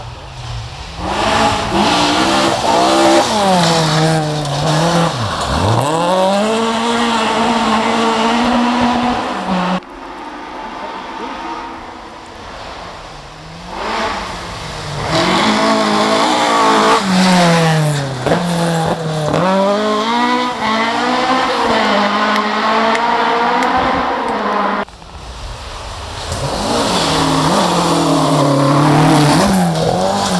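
Rally car engines driven hard on a gravel forest stage, their pitch climbing and dropping repeatedly with gear changes and throttle lifts as each car passes. The sound breaks off abruptly about ten seconds in and again about 25 seconds in, between separate cars.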